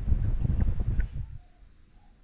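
Low rumble of wind buffeting the microphone for about the first second. It then gives way suddenly to a steady high-pitched drone of insects in the trees.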